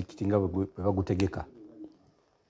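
Speech only: a man talking in a low voice, trailing off into a short low hum about a second and a half in, then a pause.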